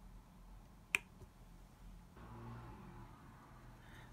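A single sharp click about a second in as a square resin diamond drill is set down on the canvas with a drill pen.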